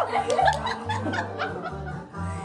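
Women laughing and chuckling over background music with a steady bass beat.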